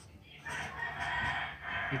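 A rooster crowing once, starting about half a second in and lasting just over a second.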